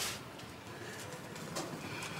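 Quiet outdoor background with a pigeon cooing faintly, opening with a short sharp click.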